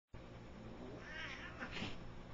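A cat calls out during a play-fight with another cat: a gliding call begins about a second in, followed by a second, louder call near the end.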